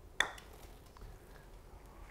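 A single sharp click of a PING mallet putter striking a golf ball about a quarter second in, with a brief metallic ring. The putt is struck with the shaft leaning severely back.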